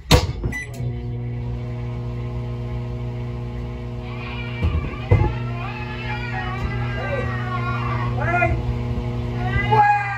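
Microwave oven running with a steady electrical hum that starts about a second in, just after the door shuts with a thump. From about four seconds a person yells and wails from inside it, muffled by the door, with a couple of knocks on the door window around five seconds.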